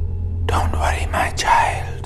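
A person whispering, starting about half a second in, over a low, steady drone.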